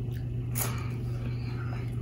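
Mouth sounds of a man chewing a bite of pizza, with one short wet smack about half a second in, over a steady low hum.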